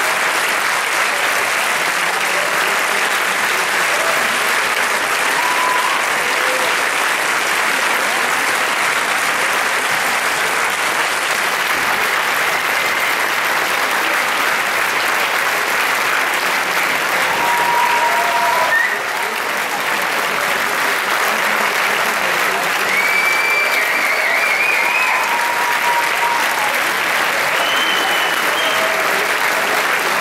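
A large concert audience applauding steadily and at length after a performance, with a few cheers rising above the clapping in the second half.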